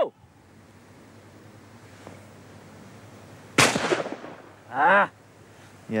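A single shotgun shot about three and a half seconds in, sharp, with a brief ringing tail.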